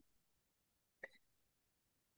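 Near silence, broken once about a second in by a single brief, faint click.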